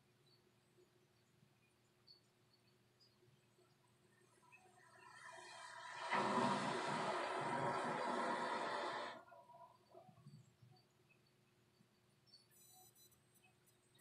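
Bonding glue squeezed from a plastic squeeze bottle onto a hair weft, a rough hiss of air and glue forced through the nozzle. It builds up about four and a half seconds in, runs for about three seconds and cuts off, with faint small sounds just after.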